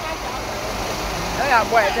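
Steady background din of a busy open-air market, with a man's voice calling out briefly near the end.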